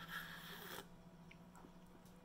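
A person slurping a sip of tea from a mug: one short airy slurp lasting under a second.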